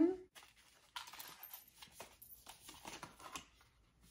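Paperboard cosmetics palette carton being opened by hand: faint rustling and scraping of card with small ticks, starting about a second in and running for a couple of seconds.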